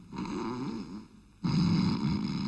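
A man snoring, two long rasping snores. The second, starting about one and a half seconds in, is louder than the first.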